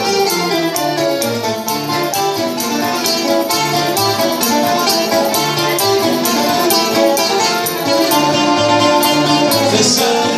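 Live Greek laïkó band playing an instrumental passage on bouzouki, accordion and guitar, plucked notes in a steady rhythm over repeated low bass notes.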